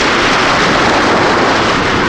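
Sea waves breaking on a beach: a loud, steady rush of surf noise.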